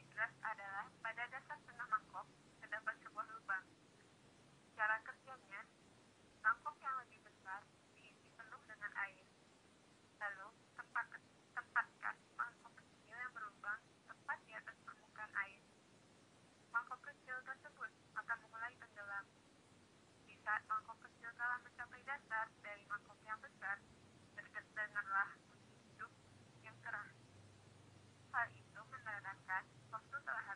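A voice speaking in short phrases with brief pauses, thin and tinny with no low end, like speech heard over a telephone line.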